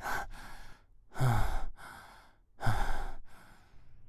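A man's heavy, sighing breaths: three long breaths, each followed by a shorter one, the second and third opening with a low groan.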